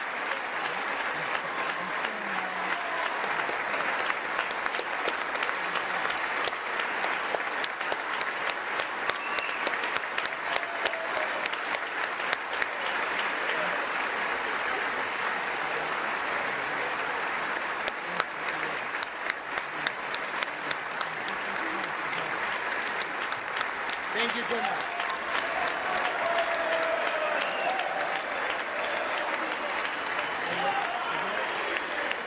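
Large audience of members of Congress giving a standing ovation: sustained, dense applause of many hands clapping, with faint voices underneath.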